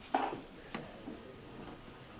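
Two short knocks about half a second apart, the first louder, over quiet room tone.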